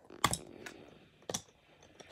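Plastic LEGO bricks clicking and tapping as they are handled and pressed together: a few sharp clicks, the loudest about a quarter second in and another just after a second.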